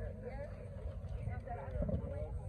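Several people talking indistinctly in a group, with an uneven low rumble underneath and a dull thump near the end.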